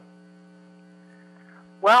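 Steady electrical mains hum: a low buzz with a ladder of even overtones, holding level throughout. A man starts speaking near the end.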